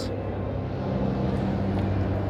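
Steady background noise of a large exhibition hall: a constant low hum under an even wash of room noise, with no distinct events.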